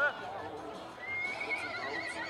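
A horse whinnying: a long, high, wavering call that starts about halfway through.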